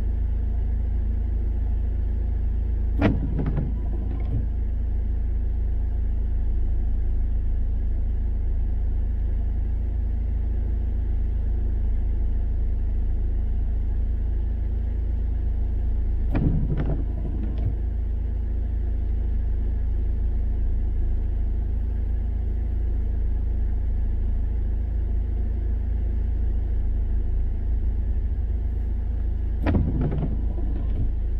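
Steady low rumble inside a car's cabin in slow traffic in the rain, broken three times by the windscreen wipers sweeping on an intermittent setting, about every 13 seconds, each sweep a brief double stroke across the glass.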